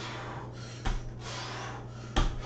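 A man breathing hard in forceful exhales during a leg exercise, with one thud of a foot landing on the floor just under a second in, over a steady low hum.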